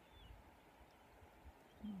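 Near silence: a faint low rumble, with two brief faint high chirps, one near the start and one near the end.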